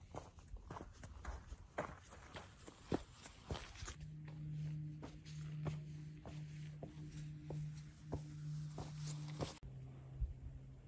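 Footsteps on a dry dirt and rocky hiking trail: irregular crunches and scuffs. From about four seconds in, a steady low hum runs underneath the steps.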